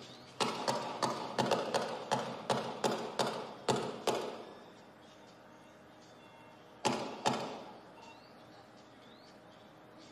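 A rapid volley of about a dozen gunshots over roughly four seconds, then two more shots about three seconds later, carried over police radio traffic.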